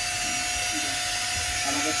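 Jeweller's rotary handpiece running with a steady high whine while working a gold chain band.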